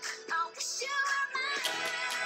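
A produced pop song playing: a woman sings over a backing track, and a quick, even hi-hat beat comes in near the end.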